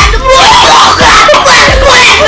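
A loud screaming voice with gliding pitch over backing music that carries a deep bass beat.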